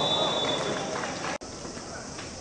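Referee's whistle, a steady high blast that ends under a second in, over players shouting on an outdoor pitch. About a second and a half in the sound cuts off sharply and gives way to quieter open-air field ambience with faint distant voices.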